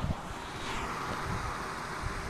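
Steady outdoor background noise: wind on the microphone and road traffic, with no distinct event standing out.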